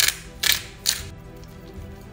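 Hand spice grinder twisted over food: three short grinding bursts about half a second apart in the first second, then it stops, with background music underneath.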